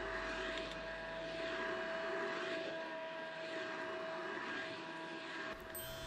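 Canister vacuum cleaner running, its motor giving a steady whine over rushing air, the sound swelling and easing about once a second as the nozzle is pushed back and forth over a rug.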